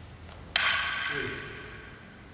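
Two wooden bokken (practice swords) striking together once: a sharp clack about half a second in that rings briefly and fades.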